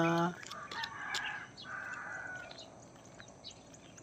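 A rooster crowing once, faintly, a drawn-out call lasting about two seconds that starts just after the voice stops.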